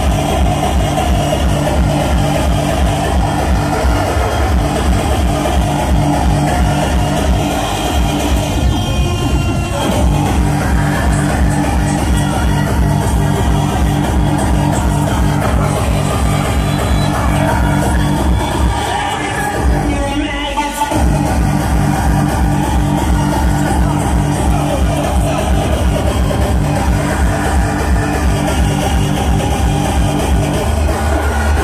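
Hardcore techno DJ set played loud through a club sound system, driven by a fast, pounding kick drum. The kick drops out for about a second just after two-thirds of the way through, then comes back in.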